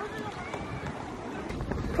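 Faint, distant voices talking over steady outdoor background noise.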